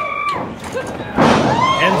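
A loud thud about a second in, as a leaping enzuigiri kick lands on a wrestler's back and the kicker drops onto the ring mat.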